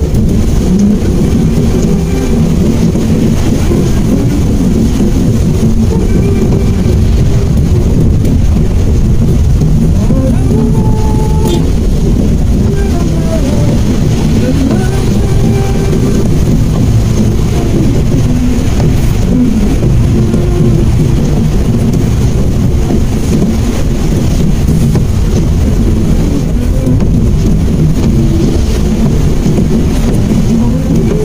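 Steady low rumble of a Mitsubishi Mirage's engine and tyres on a wet road, heard from inside the cabin.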